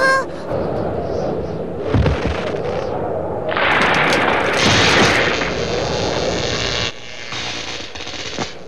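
Cartoon winter-storm sound effects: wind blowing, with a heavy thud about two seconds in and a louder rushing stretch from about three and a half seconds that drops off suddenly near seven seconds.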